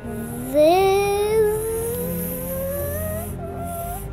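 A child's voice holding one long note that slides slowly upward for about three seconds, a vocal sound effect, over background music. It is loudest and strongest near the start, and it breaks off briefly just before the end and picks up again.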